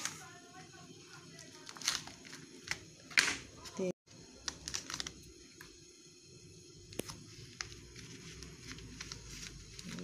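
A kitchen knife cutting a block of curry roux in its plastic tray on a wooden cutting board: a few scattered knocks and scrapes of the blade, the loudest about three seconds in.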